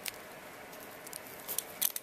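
Scissors cutting the plastic shrink-wrap off a paperback manga volume: faint crinkling with a few sharp snips and clicks, the loudest near the end.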